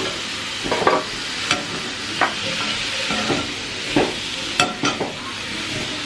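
Onions and green capsicum sizzling in a metal kadai on the stove, with a slotted metal spatula stirring and scraping the pan. A few sharp scrapes and clinks stand out over the steady sizzle.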